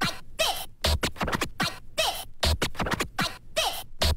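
Oldskool rave/hardcore music chopped into short stuttering bursts, with a falling pitch glide repeating about twice a second and a low thump about every second and a half.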